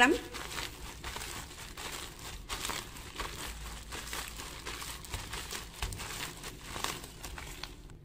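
A plastic bag crinkling and rustling over and over as mashed sweet potato and tapioca starch dough is kneaded inside it by hand.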